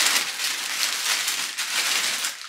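Plastic and paper wrapping and tape being pulled off an engine: a dense crinkling, crackling rustle.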